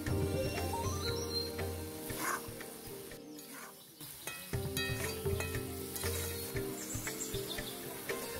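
Thick chicken curry sizzling in a black kadai over a wood fire, with a spatula stirring and scraping through the gravy. Background music plays over it, dropping out briefly around the middle.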